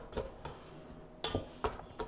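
Plastic pastry cutter scraping the sides of a glass mixing bowl and working dough, a few soft, separate scrapes and clicks.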